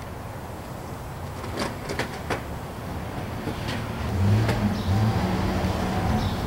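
Skateboard on pavement: a few sharp clacks in the first half, then a louder low rumble of its wheels rolling from about four seconds in.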